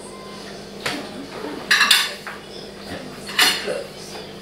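Cutlery clinking against plates during a meal: a few short, sharp clinks, the loudest cluster about two seconds in and another a little after three seconds.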